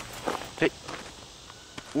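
Mostly speech: a man says "Hey" once, over a faint steady outdoor background.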